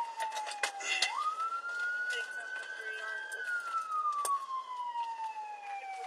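Police car siren wailing, its pitch sliding slowly up and down. It jumps back up quickly about a second in and again at the end, with scattered clicks over it.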